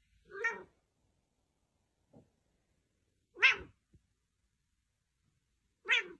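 A domestic cat giving three short meows a few seconds apart.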